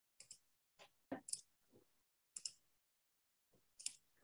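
Faint, irregular clicking from a computer mouse and keyboard, about eight short clicks picked up over a video-call microphone, with dead silence between them.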